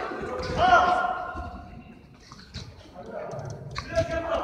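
A man's call, held for about a second and echoing in a large indoor football hall, then a few thuds of a football being kicked on artificial turf, the sharpest just before the end.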